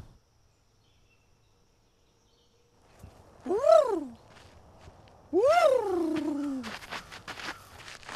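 Silence for about three seconds, then a man sings two drawn-out "ta-da" calls, each rising then falling in pitch, the second longer and sliding lower. A few scuffs of feet on a dirt path follow.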